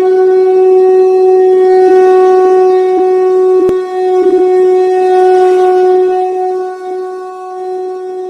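A conch shell (shankh) blown in one long, steady note, wavering briefly about halfway through and growing a little softer near the end.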